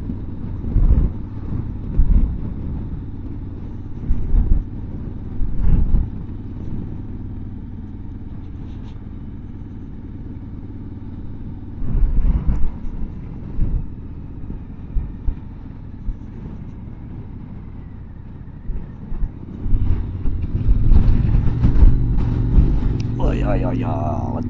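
Motorcycle engine running at steady road speed, heard from the rider's own bike, with short gusts of wind rumbling on the microphone. About 20 seconds in, the engine gets louder.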